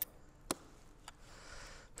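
A few faint clicks, the sharpest about half a second in, over a quiet background.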